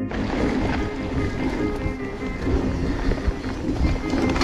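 Background music over wind rushing on the action camera's microphone as a mountain bike rides fast down a dirt trail.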